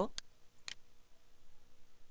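Two computer mouse-button clicks about half a second apart, over a faint background hiss.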